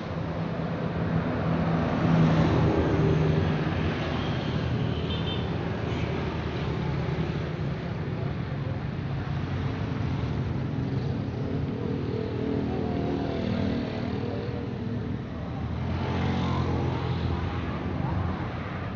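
Road traffic passing close by: a bus's engine grows loudest about two seconds in, cars and motorcycles keep up a steady rumble, and a small box truck's engine swells again near the end.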